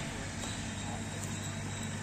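Small tracked excavator's diesel engine running steadily, heard from across the cleared lot as a low, even drone while it levels the ground.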